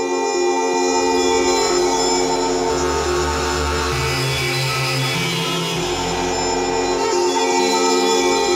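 Eurorack modular synthesizer improvisation: a dense layered drone of held tones over a low bass part that steps to a new pitch every second or so.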